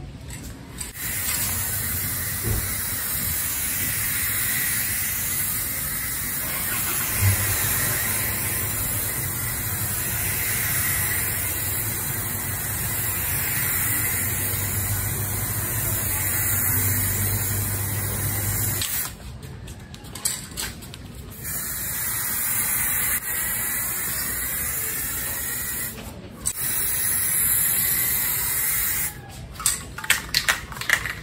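Aerosol spray-paint can with a clip-on trigger handle spraying primer in long continuous hissing passes. The first runs about eighteen seconds; after a short pause come two shorter passes of about five and three seconds.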